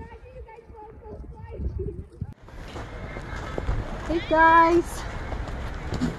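Outdoor voices: faint distant voices at first, then louder steady outdoor noise comes in, and a high voice calls out once, held for about half a second, a little past the middle.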